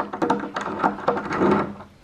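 Light metallic clicks and rattles of a door handle's square steel spindle being pushed through a mortice latch and moved in its hole in a wooden door.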